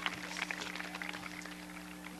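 Scattered applause from an audience trailing off, with a brief laugh at the start and a steady low hum underneath.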